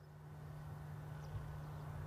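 Quiet outdoor background with a steady low hum and a faint rumble.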